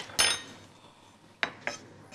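Four separate clinks and knocks of metal kitchen utensils, the second, just after the start, ringing briefly.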